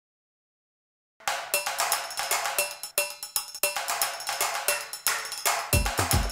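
Music starts about a second in with sharp, rapid percussion strikes over a few held notes; deep bass beats join near the end.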